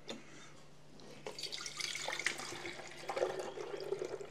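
Milk pouring from a plastic measuring jug into a glass jar: a soft, steady splashing pour that starts about a second in.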